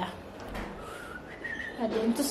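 Soft whistling: a couple of short, thin notes about a second in, the second one higher.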